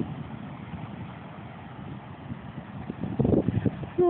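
Ocean surf breaking on a beach, a steady rush through a phone microphone, with wind buffeting the microphone in a louder rumbling gust about three seconds in.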